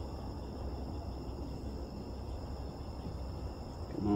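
Crickets trilling steadily at a high pitch over a low, even background rumble.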